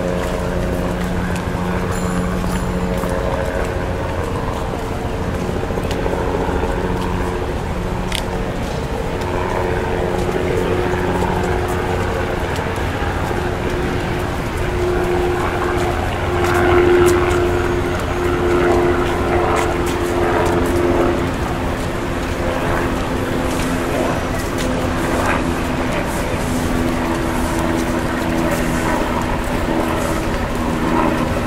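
Busy city street: steady traffic with vehicle engines running at held pitches that shift every few seconds, and voices of people in the street. The traffic gets louder for a moment a little past halfway.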